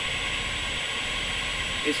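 A steady hiss, strongest in the upper-middle range, with a faint high-pitched whine running under it.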